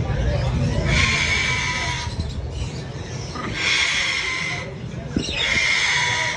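Blue-and-yellow macaw chicks giving three long, harsh rasping calls, each lasting about a second.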